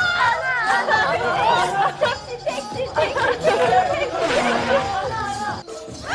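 Several people laughing and chattering over each other, with background music running underneath.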